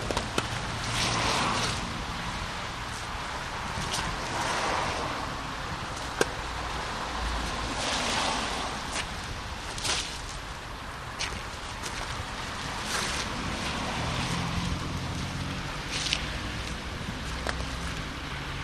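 Outdoor noise of wind and passing street traffic, with patches of hissing and rustling and a few clicks as sand is poured from a bag onto driveway ice.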